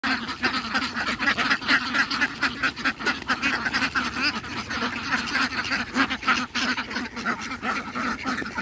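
A large flock of domestic ducks quacking in a dense, continuous chorus of overlapping calls while crowding around feed basins at feeding time.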